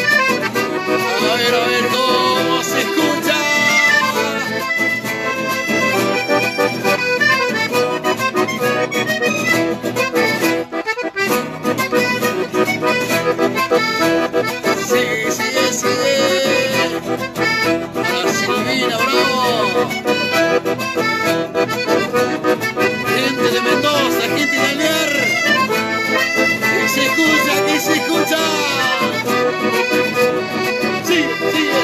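Button accordion and acoustic guitar playing an instrumental chamamé, with a brief drop in the playing about eleven seconds in.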